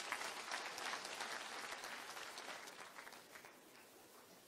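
Faint audience applause: many hands clapping at once, fading away over about three seconds.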